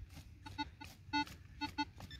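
Handheld metal-detecting pinpointer probe beeping in a series of short, irregular buzzy beeps, one held a little longer past the middle, as it is pushed into the soil of the dig hole: the sign of a metal target close to its tip.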